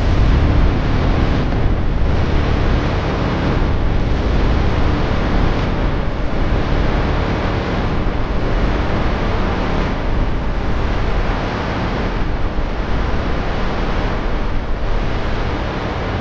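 Steady, loud rushing noise with a heavy low rumble and no clear pitch, starting abruptly and holding at an even level throughout.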